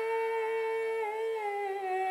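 Background devotional song: one long held note, steady at first, then easing down slightly in pitch with a gentle waver from about a second in.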